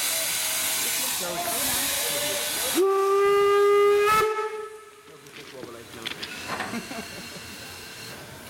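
BR 52 steam locomotive 52 8141-5 hissing steam, then sounding its steam whistle in one steady blast of about a second and a half, about three seconds in. The hiss and whistle cut off together and it goes much quieter.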